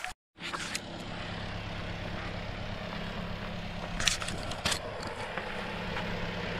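Vibratory plate compactor running with a steady engine hum, compacting soil, with a few sharp knocks about four seconds in.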